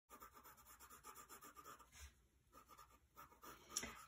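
Pencil shading on drawing paper: faint, quick, even scratching strokes, with a short pause a little after halfway before a few more strokes.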